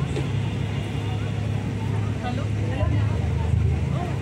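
Steady low machine hum, with faint voices talking in the background.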